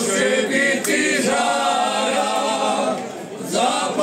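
A men's folk singing group singing a Croatian folk song a cappella, several voices in harmony on long held notes. Near the end the voices drop off briefly and come back in on the next phrase.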